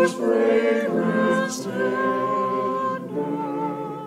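Small church choir singing unaccompanied, held notes in short phrases, the last phrase thinning out and fading near the end.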